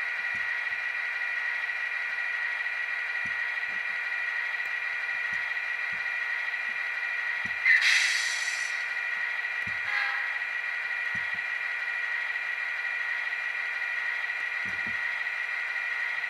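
HO-scale Athearn GP35 model locomotive's DCC sound decoder playing a steady, thin-sounding diesel idle through its small onboard speaker. A short burst of air hiss comes about eight seconds in.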